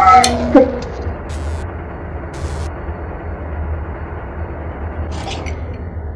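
Electrical machine sound effect: a whine glides down in pitch and cuts off with a click just over half a second in, then a steady low electrical hum with hiss goes on. It marks the machine losing power after a mis-thrown switch.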